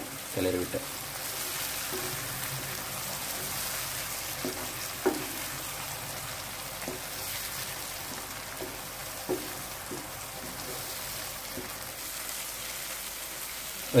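Chopped onions and tomato sizzling steadily in oil in a non-stick frying pan while being stirred with a spatula, with a few light knocks of the spatula against the pan. The tomato is being cooked down until soft and its raw smell is gone.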